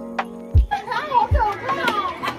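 Music with a steady kick-drum beat, with excited high-pitched voices and laughter coming in over it about half a second in.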